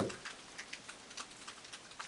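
Light rain: faint, irregular ticks of drops falling.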